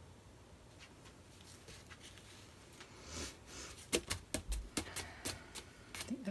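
Plastic tray on a paint spinner clicking and knocking as it slows and comes to a stop, a quick run of sharp clicks starting about three seconds in after a faint, quiet spin.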